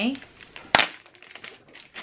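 Dried pampas grass stems rustling and crackling as a bundle is unwrapped and handled, with one sharp click about three-quarters of a second in and faint small crackles after it.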